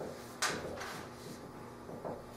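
Dry-erase marker writing on a whiteboard: short scratchy strokes, the loudest one about half a second in.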